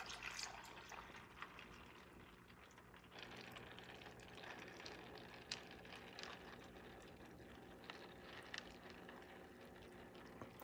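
Faint trickling of water, with scattered small drips, as a hydroponic grow bed of clay pebbles fills from its tank. A low steady hum runs underneath.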